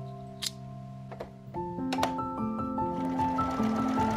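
Soft background piano music, held notes stepping through a melody, with a few sharp clicks in the first two seconds.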